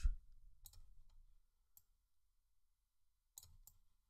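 Computer mouse clicking about five times, faint sharp clicks spaced irregularly.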